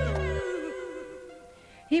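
The tail of a piece of music: the bass and beat stop about half a second in, and a wavering, sliding note fades out over the next second. A woman starts speaking right at the end.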